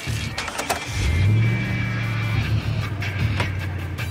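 A car engine starting about a second in and then idling with a steady low hum, over background music. Two sharp clicks come just before it starts.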